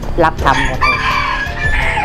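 A rooster crowing once, one long call starting about half a second in and lasting well over a second, with a few spoken words just before it and soft music underneath.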